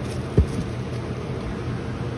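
A single dull knock about half a second in, over a steady low hum.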